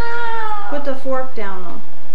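A toddler's high-pitched whining cries: a long falling wail at the start, a few short cries in the middle, and another falling wail near the end.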